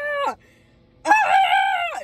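A woman's high-pitched, drawn-out squeals of delight, sung out as "aah". The first held note slides down and stops about a third of a second in. After a short pause a second, higher held note starts about a second in.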